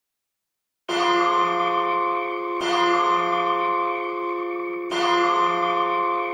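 A bell tolling three times, about two seconds apart, starting about a second in; each stroke rings on steadily until the next.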